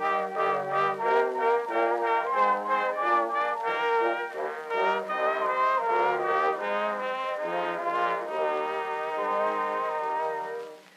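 Orchestral introduction of a 1907 Edison Gold Moulded cylinder recording, led by brass and playing a slow, chordal tune. The sound is thin and lacks deep bass.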